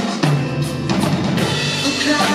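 Live rock band playing, the drum kit hitting hard over sustained bass and keyboard chords.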